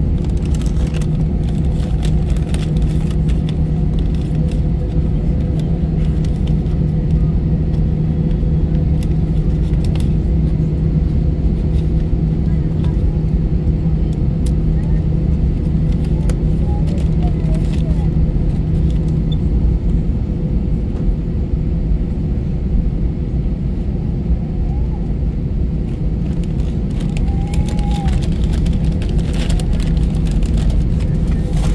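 Steady low drone in an Airbus A320neo cabin before takeoff, with the engines running and a few constant hum tones under it; the level holds even with no spool-up.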